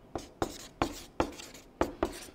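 Marker pen writing on flip chart paper: about five short strokes in quick succession as figures are written.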